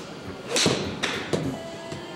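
A golf club swung through and striking a ball off a hitting mat about half a second in, a whoosh and impact thud that is the loudest moment, followed by two shorter knocks, likely the ball hitting the simulator screen. Background music runs underneath.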